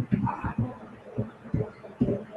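Muffled, indistinct speech: a voice talking in low, irregular pulses with little clear detail.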